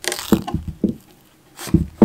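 Punch needle fabric rustling and scraping as it is pulled taut by hand and pressed onto the teeth of a gripper strip frame, with a few dull knocks of hand and frame.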